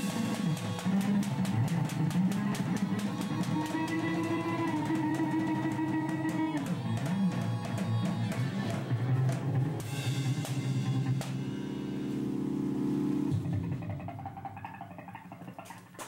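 A live band playing without vocals: a drum kit struck under held chords that change every few seconds. The music dies away over the last two seconds.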